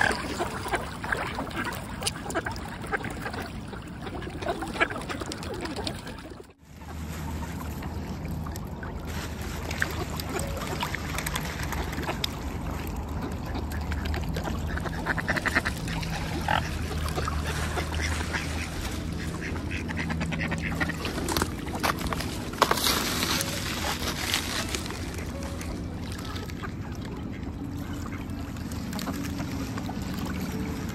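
A flock of mallard ducks quacking around the water's edge, with the swans and ducks jostling in the water. The sound cuts out briefly about six seconds in.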